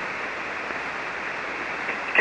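Steady hiss of band noise from a ham radio receiver on the 40-metre band in single-sideband mode, cut off above the voice range, heard between transmissions while waiting for the other station to reply.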